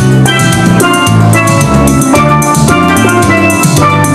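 Steel band music: several steelpans struck with mallets, playing quick, bright melodic notes over a low bass part.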